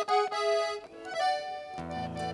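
Accordion holding sustained chords. The chord changes about a second in, and lower bass notes join near the end.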